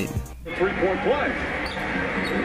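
Televised basketball game sound, starting about half a second in after a brief dip: court ambience with faint, indistinct voices in the background.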